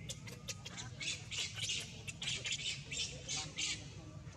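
Baby macaque screaming: a rapid run of short, shrill squeals, about a dozen, from about a second in to near the end.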